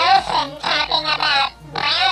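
A man's comic character voice for a little elf, babbling unintelligibly in speech-like phrases, with a short break in the middle.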